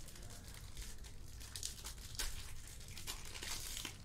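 A foil trading-card pack wrapper crinkling and tearing as it is pulled open by hand. The crackles are irregular and come thicker in the second half.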